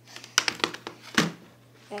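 Handling sounds at a desk: a cluster of sharp clicks and rustles about half a second in and a single sharp click just over a second in, over a low steady hum.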